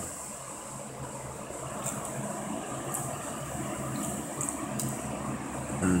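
A person drinking soda straight from a glass bottle, with a few faint sips and swallows over a steady low hum of room background.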